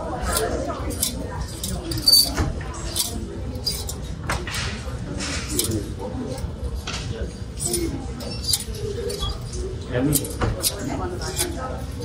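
Metal clothes hangers clinking and scraping along a clothing rail as garments are pushed aside one after another, in an irregular run of sharp clicks.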